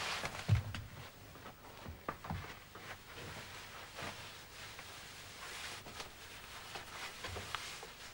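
Soft rustling of clothing and small knocks of movement as two people embrace, with a low thump about half a second in.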